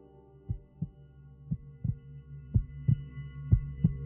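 Heartbeat sound effect in a trailer score: a double thump about once a second, growing louder, over a low drone and faint high sustained tones.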